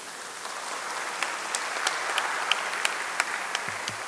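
Lawmakers applauding: a patter of many hands clapping that builds gradually.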